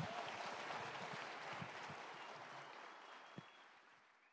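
Audience applauding, the clapping slowly dying away toward the end, with a single low knock about three and a half seconds in.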